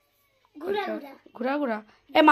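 A young child's high-pitched voice making two short drawn-out calls, each about half a second long, starting about half a second in.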